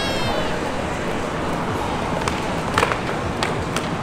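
Open city square ambience: a steady background hubbub with a short, high, slightly falling cry right at the start and a few sharp clicks in the second half.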